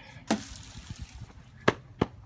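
Two sudden impacts on a wet plywood ramp lying under slushy snow: a soft, slushy hit about a third of a second in, then a single sharp tap near the end, which is the loudest sound.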